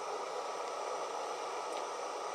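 Canister camp stove burner running with a steady, even hiss, heating a stainless steel camp toaster.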